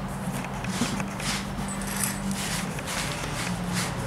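A SleekEZ grooming tool, a serrated blade on a wooden handle, scraped over a saddle pad in short repeated strokes, about two or three a second, pulling shed horse hair off the fabric. A low steady hum runs underneath.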